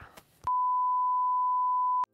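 A single steady electronic beep tone, one pure pitch, starting about half a second in, held for about a second and a half and cutting off abruptly.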